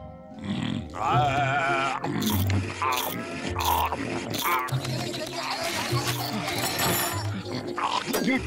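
Cartoon soundtrack: bouncy background music with a repeating bass line and percussive hits, under cartoon bear vocal effects of grunts and laughs. A wavering high-pitched squeal comes about a second in.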